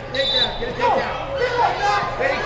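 Voices of spectators and coaches carrying through a large gym hall during a wrestling bout, with a brief high-pitched squeak early on.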